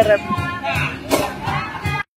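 Voices of a small group talking over music.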